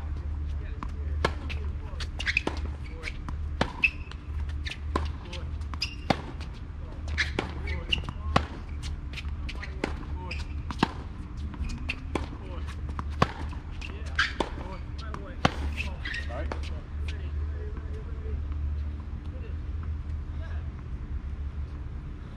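Tennis rally on a hard court: sharp pops of the ball struck by rackets and bouncing on the court, about one or two a second, stopping about seventeen seconds in. A steady low hum runs underneath.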